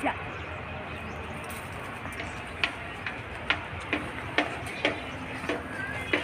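Footsteps walking on a dirt path, short crunching steps about every half second, over a steady low outdoor background noise.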